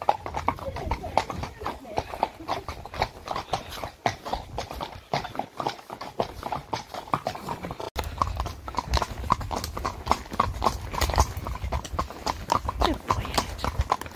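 Several horses' hooves clip-clopping at a walk on a wet tarmac road, a steady run of overlapping clops. A low rumble joins in about eight seconds in.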